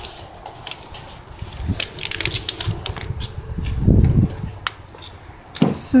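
Scattered clicks and knocks, with a dull thump about four seconds in and a faint steady hum in the middle.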